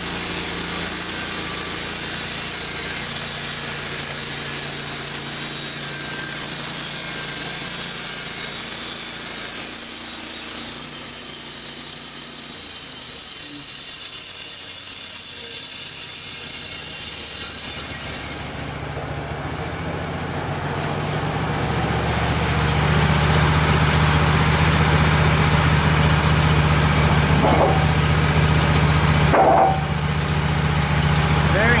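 Wood-Mizer LT15 band sawmill's blade cutting through a red oak log with a steady high hiss over its running engine. A little past halfway the cutting noise stops suddenly as the blade leaves the log, and the engine runs on alone, louder and steady. A few knocks near the end come from the sawn board being handled.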